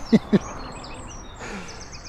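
Greylag goslings peeping: a rapid, continuous run of short high chirps. Two brief, louder low vocal sounds come in the first half-second.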